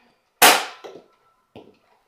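A toy foam-dart (Nerf) blaster firing: one sharp snap about half a second in that dies away quickly, followed by a few faint clicks.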